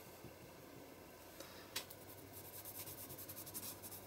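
Faint rubbing of fingers smearing wet paint across a paper journal page, with quick strokes in the second half and a soft click just under two seconds in.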